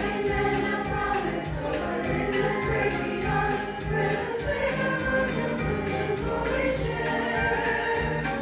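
Church choir of men and women singing together, holding long notes.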